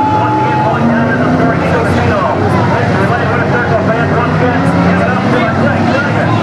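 Street stock race car's V8 engine idling, with indistinct voices talking over it.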